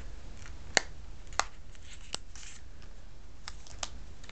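Cardstock being handled and foam adhesive dots pressed onto its back by hand: about five small sharp clicks and soft paper rustles over a low steady hum.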